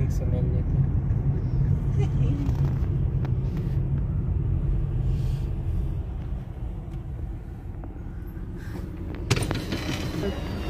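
Steady low rumble of a car's engine and road noise heard from inside the cabin in slow city traffic, with faint voices underneath. The rumble eases off about six seconds in, and a sharp click sounds near the end.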